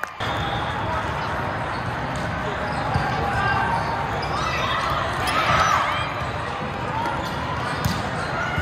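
Echoing hubbub of a large indoor volleyball hall: many voices and shouts from players and spectators across the courts, with a few sharp volleyball hits, one about three seconds in and one near the end.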